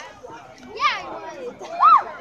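High-pitched shouts from children and spectators over background chatter: one call about a second in, and a louder rising-and-falling shout near the end.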